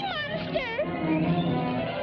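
Cartoon soundtrack music with a high, wavering cry from a cartoon woman's voice in the first second, then steady held notes of the score.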